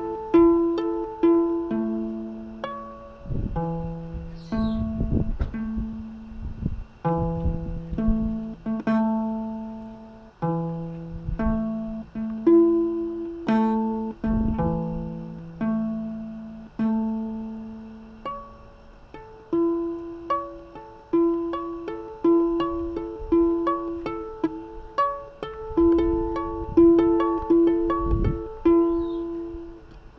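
Six-string guitar played fingerstyle: a melody of single picked notes over low bass notes, each note ringing and then fading.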